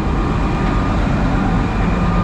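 Mercedes-Benz V8 twin-turbo diesel engine of a Wirtgen WR 2400 soil stabilizer, running steadily with a deep, even rumble.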